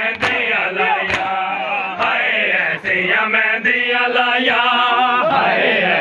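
A crowd of men chanting a noha, a Shia mourning lament, in unison. The sharp slaps of palms striking bare chests (matam) come about once a second in time with the chant, clearest in the first half.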